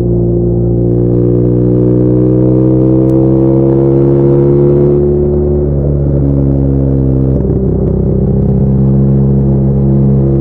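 BMW R nineT boxer-twin engine, on open aftermarket headers with the exhaust flapper valve removed, pulling under way with its pitch climbing steadily for about five seconds. In the second half the note drops and breaks twice as the revs change, then holds steady.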